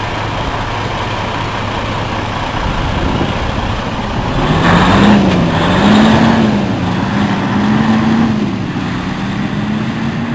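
Diesel engine of a Freightliner Cascadia semi tractor running low and steady, then pulling away about four seconds in. Its pitch climbs, then rises and dips several times as it goes up through the gears, and it grows fainter as the truck drives off.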